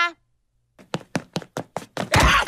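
A quick, irregular series of light knocks, about seven in just over a second, starting after a short silence.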